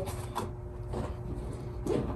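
Faint rustling and a few soft knocks of padded gear and bag fabric being handled, over a low steady hum.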